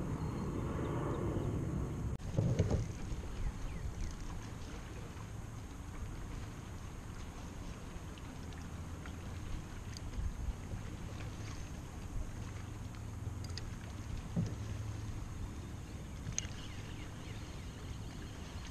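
Steady low rumble of wind on the microphone and water around a kayak hull, with a few light knocks and clicks from handling the rod and reel, the clearest about two and a half seconds in.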